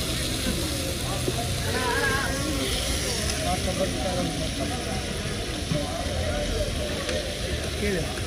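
Busy street ambience: several people talking at once over a steady low rumble of traffic.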